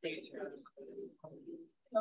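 Indistinct, muffled voices of several people chatting in a room, with a drawn-out vowel-like murmur about a second in.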